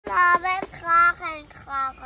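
A young child's high voice singing a short sing-song line in four brief held notes.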